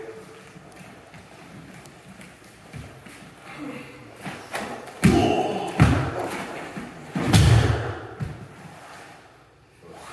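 Bodies hitting a padded mat during a jujitsu takedown. Two sharp thuds come about five and six seconds in, then a heavier, longer thud as the thrown partner lands, about seven seconds in.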